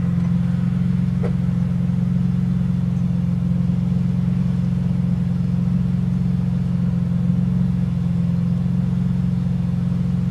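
BMW E46 M3's S54 inline-six idling through a BimmerWorld race exhaust with resonator, heard inside the stripped cabin as a steady low drone. A faint small click sounds about a second in.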